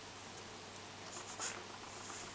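Colored pencil scratching on a coloring-book page: faint steady hiss for about a second, then a few short quick strokes, one louder stroke about a second and a half in.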